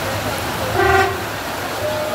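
Floodwater rushing steadily along a street gutter, with one short vehicle horn toot about a second in.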